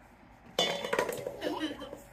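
A plastic sand mould scooping sand in a stainless-steel mixing bowl: scraping and clinking against the metal, starting about half a second in, with a brief ring from the bowl.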